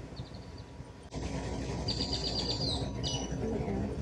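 Small birds chirping: a short run of rapid high notes shortly after the start and a longer rapid trill around the middle, then a brief call, over steady background noise that steps up abruptly about a second in.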